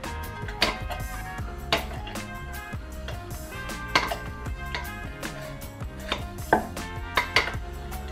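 Metal muddler pressing mint leaves and lime against the bottom of a glass, giving irregular knocks about once a second, over background music.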